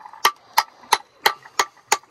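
Small hatchet knocking on a queen conch shell: six sharp, evenly paced strikes, about three a second. The blows knock a hole in the shell so the muscle holding the conch can be cut loose and the meat pulled out.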